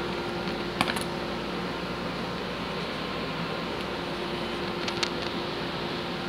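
Steady mechanical room hum, like a fan running, with two light clicks of thin laser-cut wooden strips being pressed into a wooden tray's slots, about a second in and again near the end.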